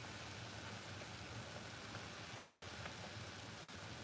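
A saucepan of banana-and-cinnamon liquid at a rolling boil, giving a faint, steady bubbling hiss. The sound cuts out completely for a moment about two and a half seconds in.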